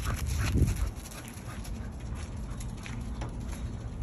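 A liver bull terrier making small sounds close by, mostly in the first second, over a steady low rumble.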